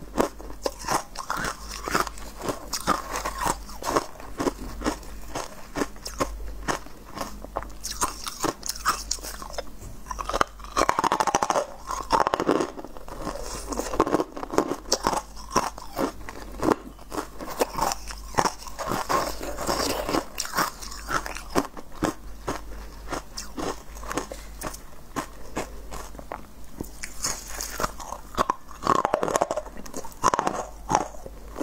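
Close-miked ASMR eating: a person biting into and chewing hard, crunchy chunks of food, a dense run of sharp crackling crunches with no pause.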